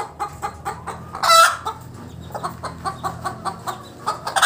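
Native chickens clucking over and over in short, quick calls, with one much louder, short call about a second in.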